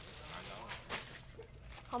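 Low voices talking with light rustling and crackling of plastic candy packaging being handled, then a louder spoken word near the end.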